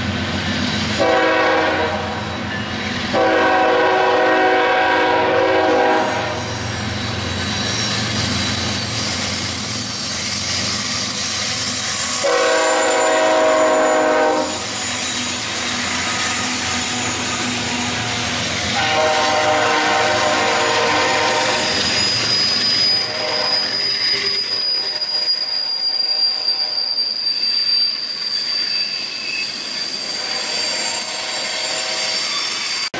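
A freight train passing close by: the lead Canadian Pacific GE ES44AC locomotive sounds its horn in a series of blasts, the longest about three seconds, over the continuous rumble and clickety-clack of the locomotives and hopper cars. In the last several seconds a thin, high, steady wheel squeal sets in as the cars roll through a curve.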